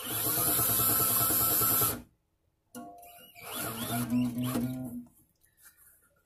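Drill used as a string winder, spinning a classical guitar's tuning key in two runs of about two seconds each with a short pause between. During the second run the nylon string, coming up to tension, sounds a pitched tone.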